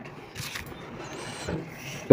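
Faint rustling and light handling noises as fried chilli pakoras are picked up from the pile, with a couple of soft knocks.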